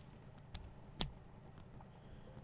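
Two faint, short clicks about half a second apart, a USB flash drive being pushed into a computer's USB port, over quiet room tone.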